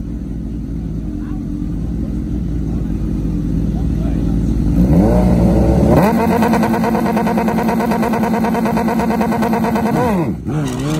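Two Suzuki GSX-R1000 inline-four sport bikes idle on the start line. About five seconds in, the revs climb, and from about six seconds they are held high and steady as the riders wait to launch.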